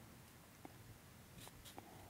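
Near silence: room tone with a few faint, short ticks.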